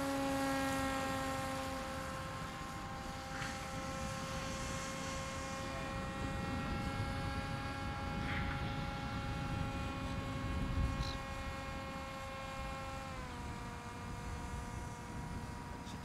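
HobbyKing Super G RC autogyro in flight, its electric motor and propeller giving a steady high whine. The whine drops slightly in pitch about thirteen seconds in as the motor slows.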